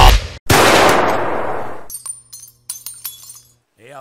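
Music cuts off abruptly, then a single sudden loud crash-like noise burst fades away over about a second and a half, followed by faint scattered clicks and a low steady hum.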